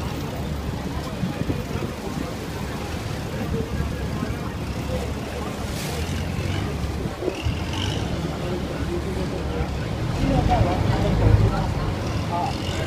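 Boat engine with a steady low rumble, mixed with wind and water noise as heard aboard a river boat. Near the end the rumble grows louder as another passenger boat passes close alongside.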